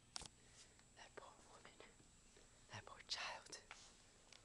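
Faint whispering, mostly in a short breathy stretch near the end, with a light click about a quarter of a second in.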